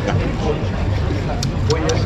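Talk at nearby tables over a steady low rumble, with a few light clicks of a knife and fork against a metal plate in the second half.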